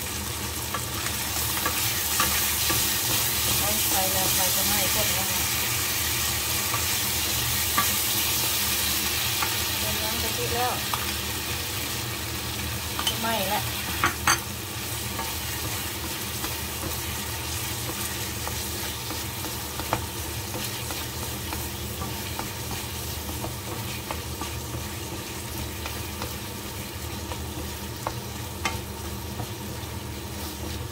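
Pork in red curry paste and coconut milk sizzling in a nonstick pan while a wooden spatula stirs and scrapes through it. The sizzle is loudest in the first third, and a few sharp knocks come about halfway through.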